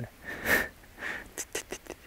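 A man's short breathy laugh through the nose: a couple of quick puffs of air with a few soft clicks.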